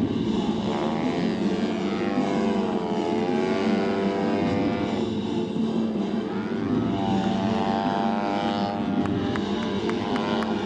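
Propeller engine of an aerobatic radio-controlled model airplane in flight, its pitch rising and falling repeatedly as the plane throttles and manoeuvres and passes by.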